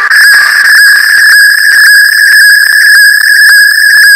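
A single loud, steady, high-pitched whistle-like tone, heavily distorted by an editing effect. Faint crackling clicks from a vinyl effect run under it.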